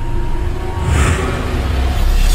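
Dark film-trailer music and sound design over a heavy, continuous low rumble, with a whoosh about a second in.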